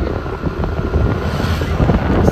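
Wind buffeting the microphone of a camera on a moving scooter: a loud, uneven rumble, with the scooter's road noise underneath.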